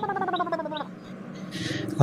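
A character's voice making a long, wordless sound whose pitch slowly falls, stopping under a second in, with quick high chirps about four a second behind it.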